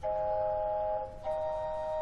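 Chamber organ playing soft, held chords of pure-sounding tones that do not fade, moving to a new chord about a second in and again near the end.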